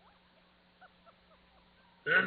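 Near silence: faint room tone with a few very faint short squeaks a little under a second in.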